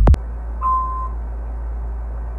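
Intro music cuts off abruptly at the start, leaving a steady low room hum with one short high beep about half a second in.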